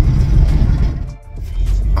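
Steady low rumble of a cargo van's engine and tyres heard inside the cab while driving, with a brief drop about a second in.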